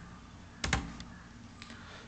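Computer keyboard keystrokes: a quick pair of key clicks a little after half a second in, then a couple of fainter clicks later.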